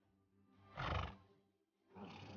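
A horse neighing once, briefly, about a second in.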